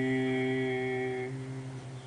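Unaccompanied solo voice singing and holding one long, steady final note of a Cantonese ballad. The note fades out about two-thirds of the way through.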